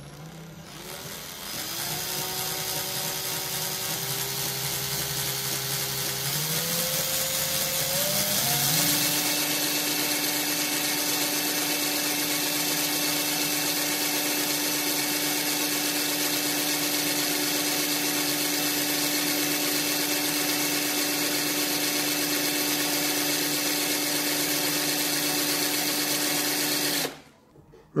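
Electric drill motor spinning a 24-gauge core wire so that fine nichrome wire wraps tightly around it, building a Clapton coil. The whine climbs in pitch in steps over the first nine seconds or so, runs at a steady speed, then cuts off suddenly shortly before the end.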